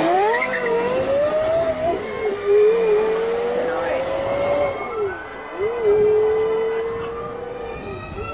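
Porsche Carrera GT's V10 engine accelerating hard through the gears. The pitch climbs steadily, drops sharply at an upshift about two seconds in and again about five seconds in, then climbs once more before a third shift near the end.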